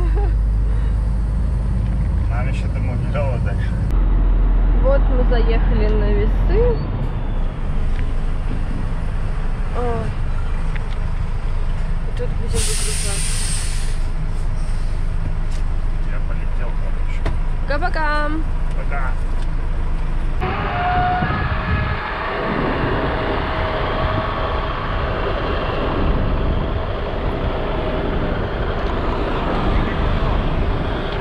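Iveco EuroStar truck's diesel engine running at low speed, heard from the cab, with a short hiss of air from the air brakes about twelve seconds in. About twenty seconds in the sound changes to a steady rushing noise with a faint whine.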